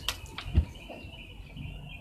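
Faint bird song: a thin, wavering chirping line that runs on. A few light clicks in the first half-second come from buttons and wire being handled.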